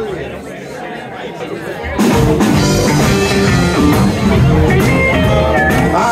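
After two quieter seconds, a live blues band comes in all at once about two seconds in and plays on at full volume.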